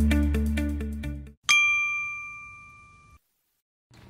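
Electronic intro music fading out in the first second, then a single bright ding, a bell-like chime that rings and dies away over about two seconds.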